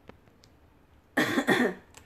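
A person coughs twice in quick succession, loud and short, a little over a second in, after a moment of quiet room tone.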